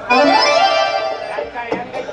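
Harmonium accompaniment playing a sustained reedy phrase that starts at once, holds for about a second and a half, then fades.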